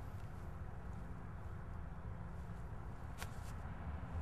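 Steady low rumble of outdoor background noise, with one faint tick about three seconds in.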